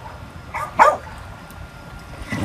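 A dog barking twice in quick succession, two short loud barks.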